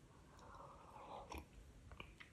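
Near silence with faint sipping and swallowing of hot tea from a mug, and a couple of soft clicks in the second half.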